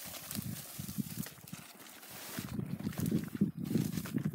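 Footsteps crunching on loose rock and gravel, uneven and irregular, heavier in the second half.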